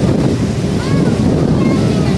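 Wind buffeting the microphone over the steady rush of a passenger ferry's churning propeller wake.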